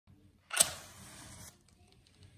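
A wooden match struck, a sharp scrape then a hissing flare for about a second that cuts off suddenly.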